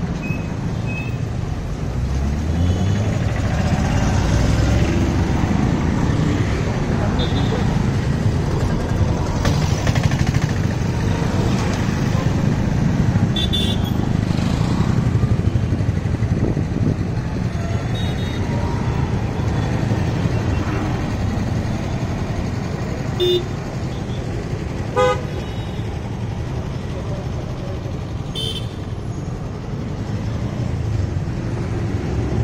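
Busy city road traffic: motorcycles, auto-rickshaws and cars passing with a continuous engine rumble. Several short horn toots sound in the second half.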